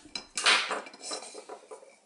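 Hard plastic toy food pieces and a plastic toy knife knocking and scraping on a plastic toy cutting board: a short rasping scrape about half a second in, then a few light taps that fade out.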